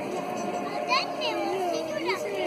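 A crowd of children chattering and calling out together, with a few high shrill shouts about a second in.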